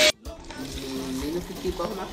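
A vacuum cleaner's motor noise cuts off abruptly right at the start. Then dirty water is poured from a wet extraction vacuum's tank into a bucket, quietly, under faint voices, as the tank is emptied after extracting a sofa.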